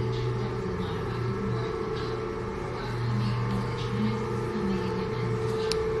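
Electric motor of a floor-mounted TV lift humming steadily as it raises a 130-inch screen up out of the floor, with a short sharp click near the end.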